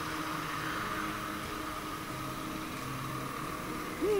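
Motorcycle running at low speed, heard as a steady hiss of wind and road noise with a faint low engine hum.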